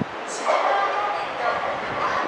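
A person's voice starting about half a second in, pitched and carried across an open-air station platform.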